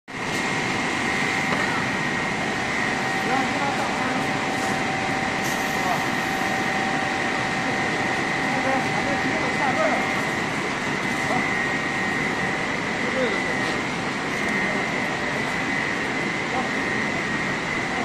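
EPE foam sheet production line machinery running steadily: a constant hiss of machine noise with two steady whining tones, one high and one lower.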